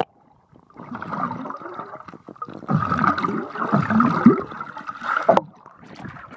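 Muffled water churning and bubbling, heard through a phone microphone dipped into a swimming pool. It gets louder about halfway through and cuts off with a sharp click near the end.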